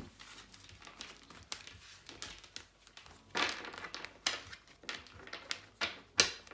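Tarot cards being handled and shuffled by hand: a run of short rustles, flicks and soft slaps, the loudest a little past halfway.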